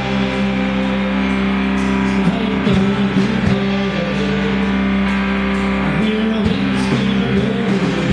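Live rock band playing: electric guitars, acoustic guitar, bass guitar and drums, with long held guitar and bass notes under steady drum hits.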